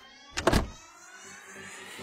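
Animated cartoon car sound effect: a short, loud rush about half a second in, as of a car speeding past, followed by a faint rising swell.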